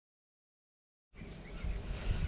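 Silence, then about a second in an outdoor ambience fades up and grows: a low rumble of wind on the microphone.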